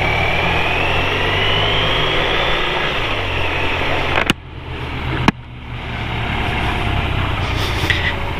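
BMW R1200RT boxer-twin engine running as the motorcycle rides off, heard from the rider's seat, with a whine rising in pitch over the first few seconds. Two sharp clicks about a second apart near the middle, each followed by a brief dip in level.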